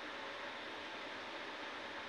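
Steady low hiss of background room noise, with no distinct sound event.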